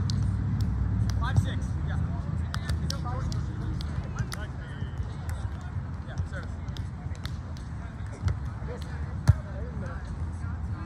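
Outdoor beach volleyball sounds: distant voices of players on the courts and a steady low rumble, with scattered sharp knocks. About nine seconds in comes the loudest sound, a single sharp slap of a hand or forearm striking the volleyball.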